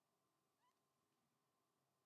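Near silence, with one very faint, brief rising squeak about two-thirds of a second in.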